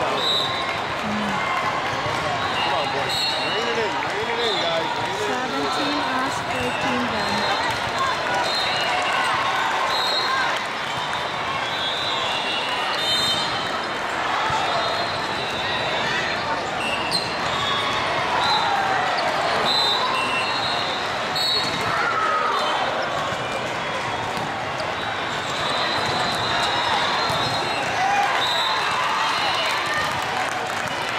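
Busy indoor volleyball tournament hall: a constant babble of many voices from players and spectators, with frequent short high-pitched sneaker squeaks on the sport-court floor and a few sharp ball hits.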